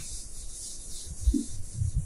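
Whiteboard eraser rubbing steadily across the board as writing is wiped off.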